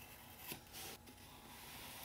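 Faint scratching of a pencil drawing a line on thin box cardboard.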